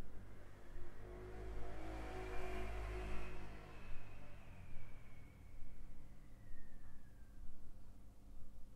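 A vehicle passing by: a low rumble swells over the first three seconds or so, then fades away with a slowly falling whine, over a steady low hum.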